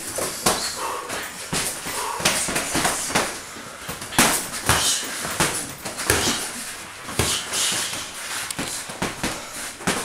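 Boxing gloves striking gloves and bodies during sparring: irregular slaps and thuds, several a second at times, mixed with the scuff of footwork and short hissing breaths.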